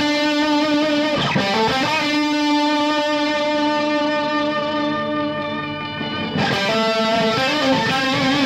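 Electric guitar chords played through an EarthQuaker Devices Pitch Bay polyphonic pitch-shifting pedal, its shifted voices blended in subtly with the dry guitar. A chord is struck and changed in the first second or so, then one rings out for several seconds before a new chord comes in near the end.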